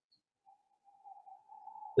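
Near silence, then a faint, steady single tone that comes in about half a second in and holds until speech resumes.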